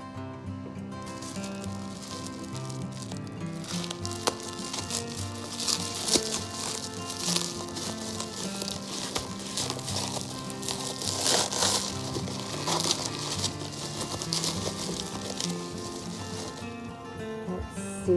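Background music with held notes, over the crackling and crinkling of bubble wrap and plastic being handled and pulled off a bottle, with a few sharp ticks, loudest around the middle.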